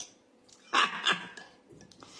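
A person slurping broth off a spoon: two quick noisy slurps about a second in.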